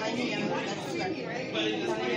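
Background chatter of several shoppers talking at once in a busy shop.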